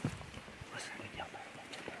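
Quiet outdoor stillness with a few faint, short bird calls about a second in, and a soft low thump right at the start.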